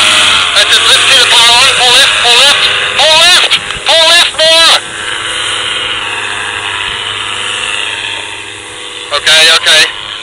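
A man's voice shouting short calls for about the first five seconds and again near the end, with a steady noise filling the gap of a few seconds in between.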